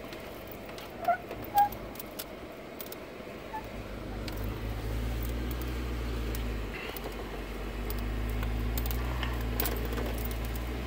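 Jeep Wrangler Sahara engine heard from inside the cabin, a low steady rumble while crawling down a steep slickrock slope. It grows louder about four seconds in, dips briefly, then rises again. Two short high squeaks come about a second in and are the loudest sounds, with faint scattered ticks throughout.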